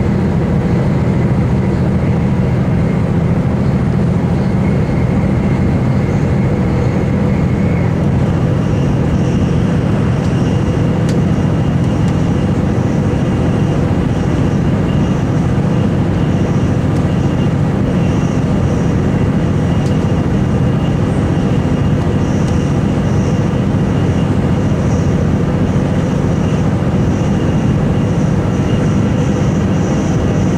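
Inside a VLocity diesel multiple unit running at speed: a steady low drone of the diesel engines and wheels on rail. A faint high whine steps up in pitch about eight or nine seconds in.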